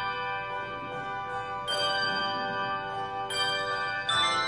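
Handbell choir ringing sustained chords, a new chord struck about every second and a half and each left to ring on.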